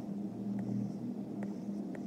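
Steady low electrical hum with three faint light ticks, the Apple Pencil tip tapping the iPad screen.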